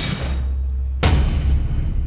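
Deep, steady low bass drone with one sharp hit about a second in: film-style sound design rather than a natural sound.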